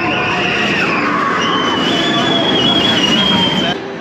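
Furius Baco roller coaster train passing on its track: a loud, steady, rattly rumble with a high wavering squeal over it from about a second in. It cuts off suddenly just before the end.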